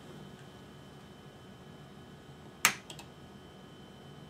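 A single sharp mouse-button click about two and a half seconds in, followed by a couple of fainter clicks, over a faint steady computer hum.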